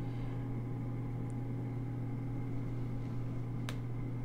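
Steady low background hum, with faint sounds of a fine steel fountain-pen nib writing a word on paper and one sharp click near the end.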